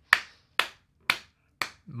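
Finger snaps in a steady rhythm: four sharp snaps, about two a second.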